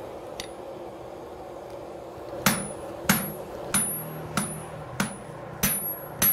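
Blacksmith's hand hammer striking red-hot iron on an anvil: six ringing metal blows, evenly paced about two-thirds of a second apart, starting about two and a half seconds in.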